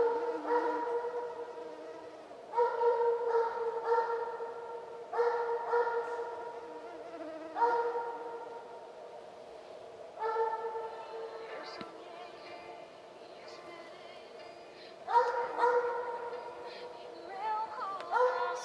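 Russian hound baying on a hare's trail: about eight long, drawn-out notes on a near-steady pitch at irregular intervals, with a pause of a few seconds about two-thirds of the way through. It is the voice of a hound in full chase.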